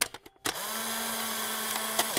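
A steady whirring noise with a faint low hum, like a small motor running, lasting about a second and a half, with a few clicks just before it starts.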